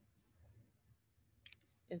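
Faint clicks and taps of a dry-erase marker on a laminated hundred chart, a few short ones spread over the two seconds, against near silence.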